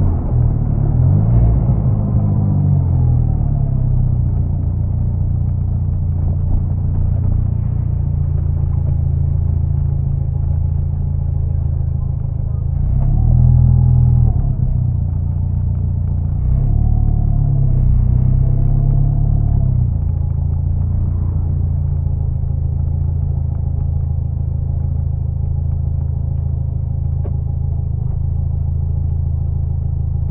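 Mini Cooper John Cooper Works engine running steadily at low speed. Its pitch rises and falls briefly with the throttle near the start, again about halfway, and a few times shortly after.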